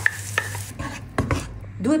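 Tomato passata poured into a hot oiled pan of frying onion, sizzling, with a couple of light clicks. The sizzle cuts off under a second in, and a few sharp clicks and knocks follow.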